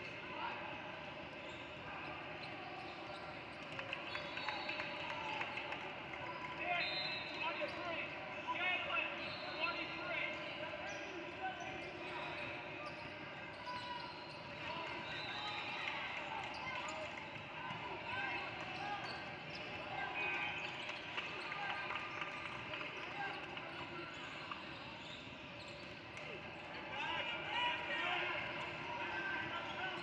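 Basketball game on a hardwood gym floor: the ball bouncing and dribbling among the chatter and shouts of players and spectators, growing a little louder now and then as play moves.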